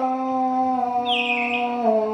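Devotional aarti music: long held notes, a singer's voice or instrument sustaining a tone that steps slightly in pitch, with a short high falling glide about a second in.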